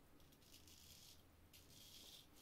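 Late Spanish Filarmonica straight razor, freshly honed on stones, scraping through lathered stubble on the cheek: one faint, high, crackly rasp of a stroke starting about half a second in and lasting about a second.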